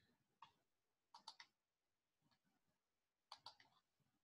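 Faint clicks of a computer mouse in near silence: a single click, then a quick pair about a second in and another pair near the end.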